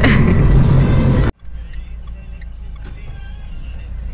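Car cabin noise while driving: a loud low road-and-engine rumble that cuts off abruptly about a second in. A quieter low driving rumble follows, with faint music over it.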